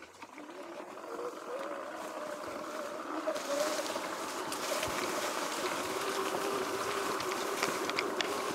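Electric dirt bike's motor whining as it pulls away. The whine rises in pitch over the first few seconds, then holds steady, with tall grass swishing and ticking against the bike.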